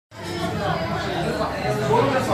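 Indistinct chatter of voices, starting abruptly at the very beginning with no clear words.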